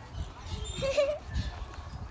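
A donkey taking a carrot from a child's hand and chewing it, amid uneven low rumbling bumps. A short, high vocal sound comes about a second in.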